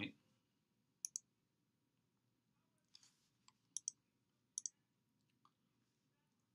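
A few faint, sharp clicks, several in quick pairs, from clicking on the computer to advance the lecture slides.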